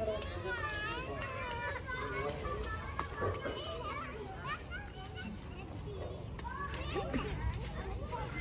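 Young children's voices calling and squealing as they play and run, heard from some distance, with short high cries coming and going throughout.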